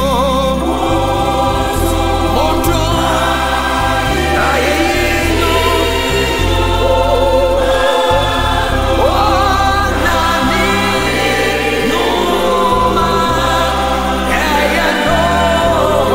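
Gospel worship music: a choir singing over a bass line that steps from note to note.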